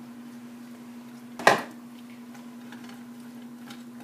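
A single sharp clack of a kitchen utensil against a frying pan about a second and a half in, over a faint steady hum. Otherwise quiet handling as vegetables are stirred in the pan.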